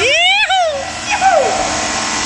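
Metal lathe running and cutting into an aluminium motorcycle crankcase, a steady machining noise as the bore is opened out to relocate the cylinder studs. Over it, a drawn-out shout rises and falls in the first second, and a shorter falling cry follows about a second in.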